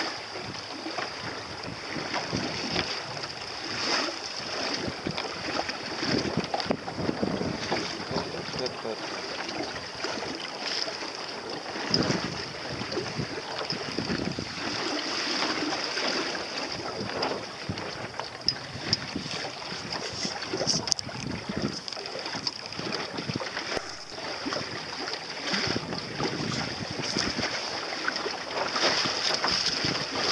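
Wind buffeting the microphone and water rushing past a small moving boat, uneven and gusty, with a steady high hiss underneath.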